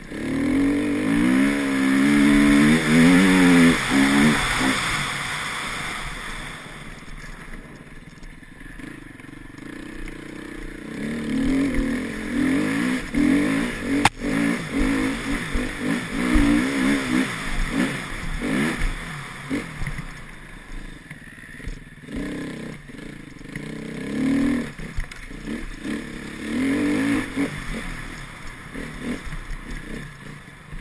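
Enduro motorcycle engine revving and easing off as it is ridden hard, heard from the rider's helmet: loud bursts of throttle at the start, around the middle and again near the end, with quieter stretches between. A single sharp knock sounds about halfway through.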